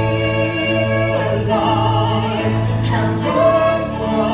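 A man singing long held notes with vibrato in a musical-theatre song over steady instrumental accompaniment.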